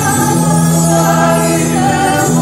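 Music: a choir of voices singing long held notes over a sustained low note, in a world-music track recorded with Georgian folk singers.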